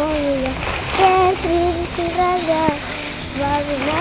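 A child's voice singing wordless held notes, several in a row stepping up and down in pitch, with a low rumble underneath during the first half.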